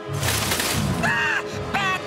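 Cartoon soundtrack music with a short burst of noise at the start and two brief, high pitched cries or notes: one about a second in, one near the end.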